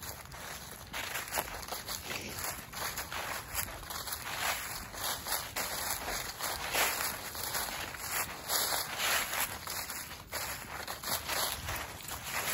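Footsteps walking through dry fallen leaves: a continuous, irregular crunching rustle step after step.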